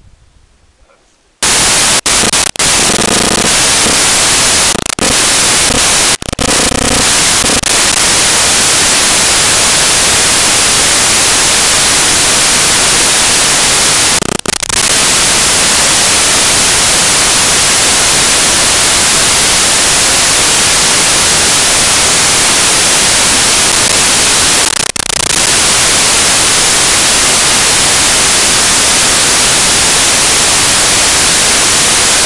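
Loud, steady white-noise static with no other sound audible through it, starting about a second and a half in and cutting out briefly a few times: a fault in the audio recording, not a sound of the scene.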